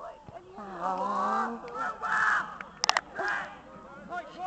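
Football players shouting calls to each other across the pitch, several raised voices in turn, with a brief sharp sound just before three seconds in.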